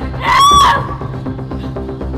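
Background music with one short, high-pitched squeal from a woman's voice, about half a second long, rising and then falling in pitch, about a quarter second in.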